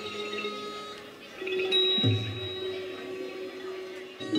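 Thai classical ensemble music of the kind that accompanies khon masked dance: slow, widely spaced struck notes that ring on, with a deeper, louder stroke about two seconds in.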